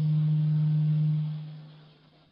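A steady low-pitched hum, one unwavering note, loudest through the first second and fading away toward the end.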